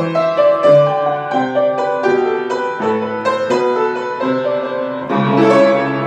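Upright piano being played by hand: a melody of single notes over chords, a few notes a second, each note starting sharply and then fading.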